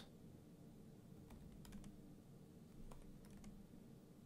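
Faint computer keyboard typing: a handful of quiet keystrokes, some in quick little groups, over a low room hum.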